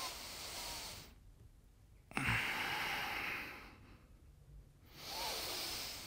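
A man breathing slowly and deeply, three audible breaths about two seconds apart with the middle one the loudest, drawn against resistance bands wrapped around his ribcage.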